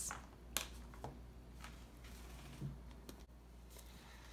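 Quiet room tone with a steady low hum and a few faint, scattered clicks and light taps, roughly one every second or so.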